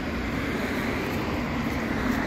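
Road traffic: a car going by on the street, a steady tyre and engine noise that swells slightly.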